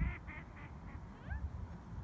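Canada geese calling: three or four short honks in quick succession at the start, followed by a few thin, rising bird calls about a second in.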